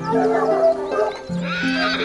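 A horse whinnies over background music of sustained, horn-like notes.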